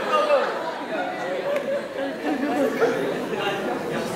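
Many people talking at once: indistinct overlapping chatter from a group in a hall.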